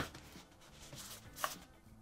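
Faint handling noises as a small cardboard box is pulled down from a cabinet, with a short tap about one and a half seconds in.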